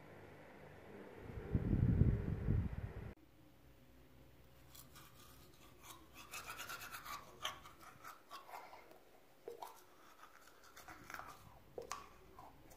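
Manual toothbrush scrubbing teeth in quick, irregular strokes, starting about four seconds in. Before that, a loud low rumble cuts off abruptly about three seconds in.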